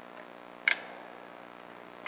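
One short, sharp click about a third of the way in as a screwdriver meets the nylon retaining bolts on an X-ray tube head, over a steady low hum.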